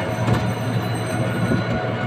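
Engine and road noise inside a moving auto-rickshaw: a steady low drone under an even rush of road noise.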